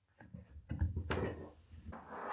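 Sheath of a PVC-insulated installation cable being stripped with a hand stripping tool and pulled off: faint scraping and rubbing with a few small clicks, one sharper click just past the middle.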